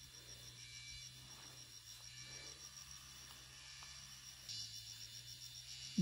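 Faint insect chirping, a high, fast, even pulse that grows a little louder about four and a half seconds in.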